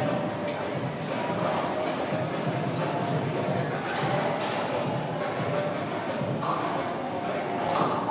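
Gym background sound: music playing with indistinct voices, steady throughout.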